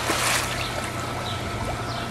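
Pool water splashing as a swimmer goes under and kicks up into a handstand, loudest in the first half second, then settling into sloshing and trickling.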